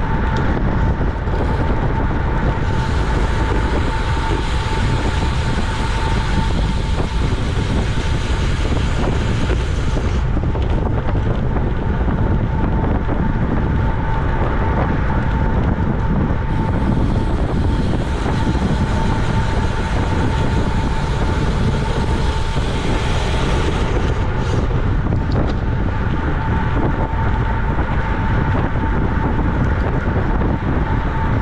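Wind rushing over a bike-mounted camera's microphone as a road bike rides at racing speed of about 26 to 29 mph, with a thin steady tone running under it. The hiss brightens twice, for several seconds each time.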